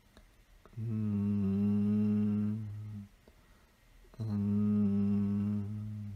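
A man's voice humming a long, low, steady note twice, each about two seconds, with a short pause between, as meditative toning.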